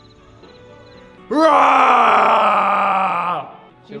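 A loud, drawn-out groan-like voice starting about a second in, jumping up in pitch and then sliding slowly down for about two seconds before cutting off, over faint background music.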